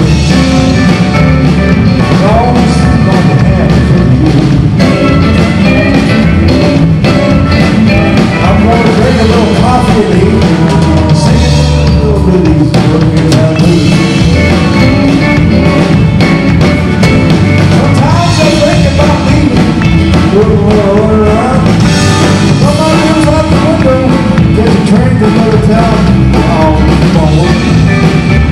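Live country band playing an uptempo chicken-pickin' number: a Telecaster-style electric guitar picking a lead line over drums and bass.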